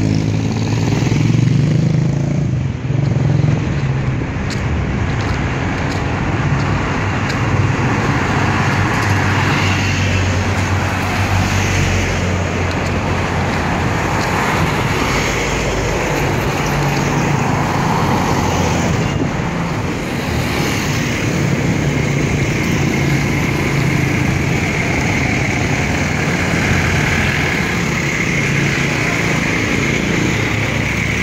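Roadside traffic on a highway: motorcycle tricycles and other vehicles drive past with their engines running over steady road noise. The sound is loudest in the first few seconds, as a vehicle passes close by.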